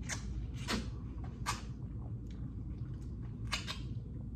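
Wet biting and slurping of juicy pomelo flesh: several short, sudden mouth sounds, a second or so apart, with two close together near the end.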